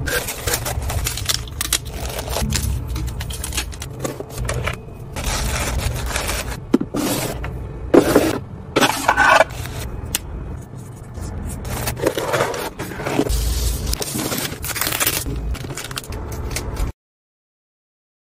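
Hands packing an order: rustling and scraping of shredded paper filler, tissue and satin scrunchies being handled in a gift box, in irregular bursts, and later a marker scratching on a paper card. The sound cuts off suddenly about 17 seconds in.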